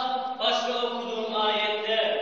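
A man chanting a sermon passage in melodic recitation style, holding long notes, with a short break about half a second in.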